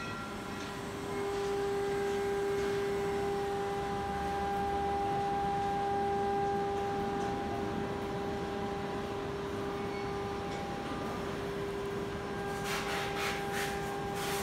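Steady electronic drone from a touch-screen roulette gaming machine, a low tone with a fainter one an octave above, coming in about a second in. A quick run of sharp clicks follows near the end.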